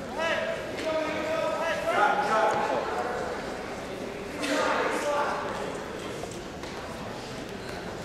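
Spectators shouting in a gym during a wrestling bout, with a long drawn-out yell in the first two seconds and a louder burst of shouting about four and a half seconds in.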